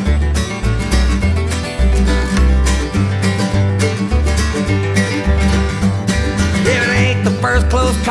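Acoustic country/bluegrass instrumental break: a strummed acoustic guitar over a bass line moving about twice a second, with no singing. A wavering melody line comes in near the end.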